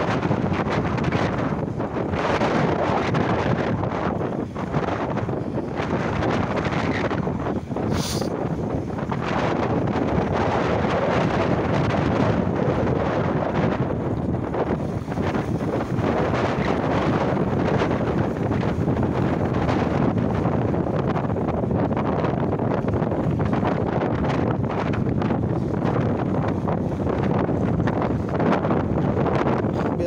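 Wind buffeting the microphone, a steady dense noise with no let-up, and one brief sharp click about eight seconds in.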